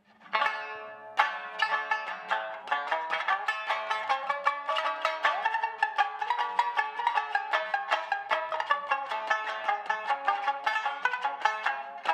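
Six-string sanshin, its extra strings tuned an octave higher, plucked in a quick, continuous traditional-style melody.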